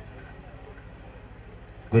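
A pause in a man's speech over a microphone, leaving only a steady low hum and faint background noise; his voice comes back in right at the end.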